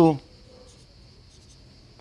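Marker pen writing on flip-chart paper: a few faint, short scratching strokes.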